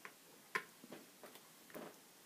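Faint clicks of laptop keys being pressed as numbers are typed into a form: about five short, separate clicks, the loudest about half a second in.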